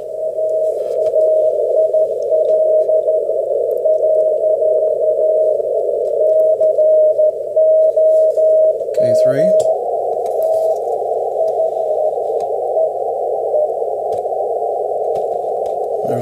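A weak Morse code (CW) beacon is keyed as a steady-pitched tone just above the band noise, heard through a receiver's narrow 450 Hz filter as a hum of hiss with the dots and dashes riding on it. About nine and a half seconds in, the hiss changes and the tone turns fainter and more broken as the antenna is switched to the other receiver.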